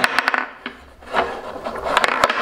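Wooden dowel rods of a homemade tabletop foosball game sliding and turning in the holes of its wooden frame, with sharp clicks and knocks of the wooden players. A quick run of clicks comes at the start, then mostly rubbing with a few more knocks.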